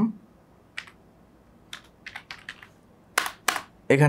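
Computer keyboard keystrokes typing code: a single key about a second in, a quick run of several taps around two seconds, then two louder key presses near the end.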